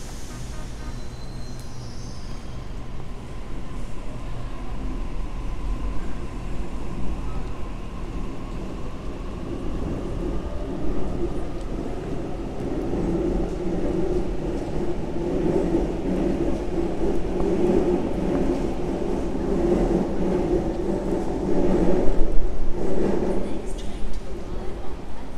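Train rumbling through the railway station, growing louder from about halfway through and loudest near the end, over a steady low background rumble.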